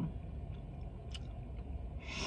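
A person chewing a mouthful of bacon burger with the mouth closed, faint and soft, with one small click about a second in, over a low steady background hum.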